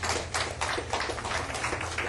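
Applause: hands clapping in a quick, even run of sharp claps, about five or six a second.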